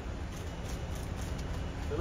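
Steady outdoor background noise: a low rumble and hiss with faint voices in the background, and no clear foreground sound.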